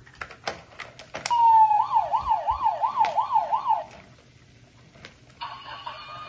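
Toy fire truck's electronic siren: a couple of plastic clicks, then a fast warbling wail of about three rises a second lasting a couple of seconds. Near the end a second siren sound starts and begins to fall in pitch.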